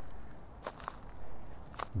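A pause between spoken phrases: faint background hiss with a few short soft clicks, two close together about two-thirds of a second in and one near the end.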